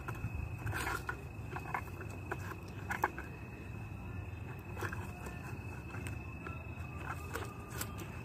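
Scattered light footsteps and rustles on dry leaf litter, with a steady thin high-pitched tone running underneath.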